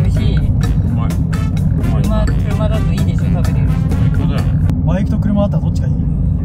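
Steady low rumble of a car's cabin road and engine noise while driving, overlaid with background music and voices. The high end cuts out abruptly near the end.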